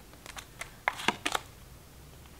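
Tarot cards being handled at the deck: a handful of light, short clicks and taps as a card is drawn and moved on the table.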